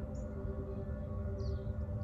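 A steady held drone of several tones, like a singing bowl or ambient background music, over a low rumble. Two short high chirps come through, one just after the start and one over a second in.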